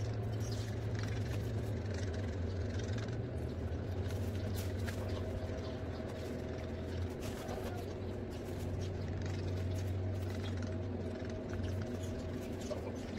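A steady low mechanical hum, unchanging throughout, with scattered faint clicks and taps.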